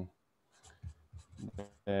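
A man's voice in a hesitation pause mid-question: a word trails off, then a second or so of faint, short mouth and voice sounds before he speaks again.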